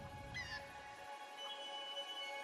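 Faint soft music with several sustained notes. About a third of a second in, a short high call rises and falls.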